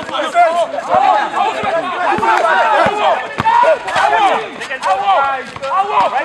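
Several voices shouting and calling out over one another at a basketball game, with a few sharp knocks scattered through.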